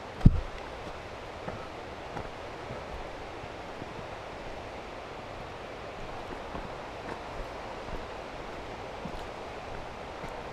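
A hiker walking a dirt forest trail with a hand-held camera: a steady rustling hiss of movement, with faint scattered footfalls and one loud, low thump just after the start.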